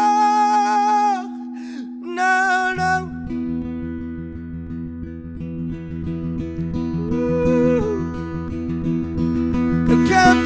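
Live worship song: a man's voice holds a sung note over acoustic guitar, breaking off about a second in, then sings a short phrase. About three seconds in, a steady low bass comes in beneath the acoustic guitar picking for an instrumental passage.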